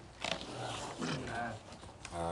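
Faint voices answering "aye" one after another in a roll-call vote, quiet and off-microphone, with a small-room echo.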